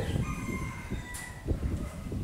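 A drawn-out bird call in the background, holding one high pitch for about a second and a half.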